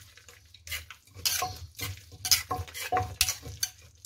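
Metal spoon and wooden pestle mixing a chili and enoki mushroom paste in an earthenware mortar: irregular wet scrapes and soft knocks against the clay, two or three a second.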